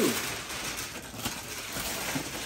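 Gift wrapping paper being torn and rustled as a heavy present is unwrapped: a steady, dense crackling.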